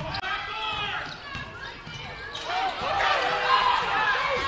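Basketball game sounds echoing in a school gymnasium: a ball dribbled on the hardwood court, sneakers squeaking in short chirps that grow busier about halfway through, and players and spectators calling out.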